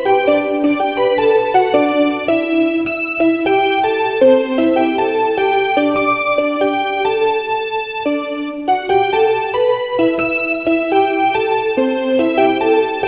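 Yamaha portable keyboard played with both hands: a steady run of melody notes over lower notes, several often sounding together, with a brief pause about three-quarters of the way through.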